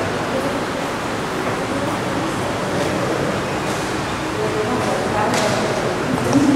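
Indistinct, muffled speech from a Mass in progress, faint under a steady rushing noise.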